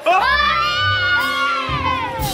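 Several people screaming in fright together, one long high-pitched shriek that starts suddenly, rises and then falls away, over background music.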